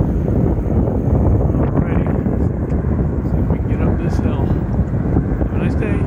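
Wind rushing over the microphone while riding a bicycle, a loud, steady rumble heaviest in the low end, with faint voice fragments in it.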